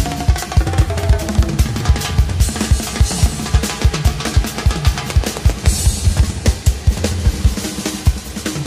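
Live drum and percussion break: a drum kit with rapid, steady bass-drum strokes and snare fills, joined by timbales and congas played with sticks. Cymbal crashes come about three seconds in and again near six seconds.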